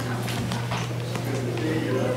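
Indistinct background talk in a meeting room, with a few sharp taps in the first second or so over a steady low electrical hum.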